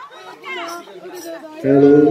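Several people chattering at once, then a much louder burst of laughter close to the microphone near the end.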